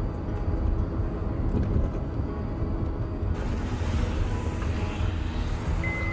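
Road and engine rumble heard from inside a moving Honda car's cabin, a steady low drone. About halfway through, a steady hiss suddenly joins it.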